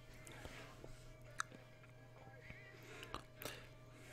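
Very faint music leaking from headphones into the microphone, over a steady low hum, with a few soft clicks.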